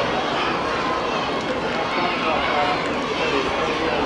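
Steady babble of a crowd of children and adults talking over one another, with no single voice standing out.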